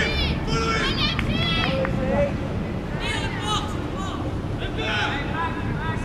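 Children's voices shouting and calling out across a football pitch in several short bursts.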